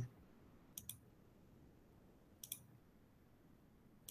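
Near silence broken by two faint double clicks, one about a second in and another about halfway through.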